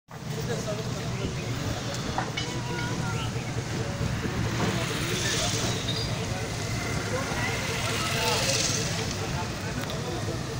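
Outdoor roadside ambience: a steady low rumble with indistinct chatter from a group of men walking, and two brief swells of hiss about halfway through and near the end.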